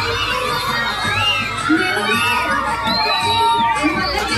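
A crowd of children shouting and cheering, many high voices overlapping with short rising-and-falling whoops.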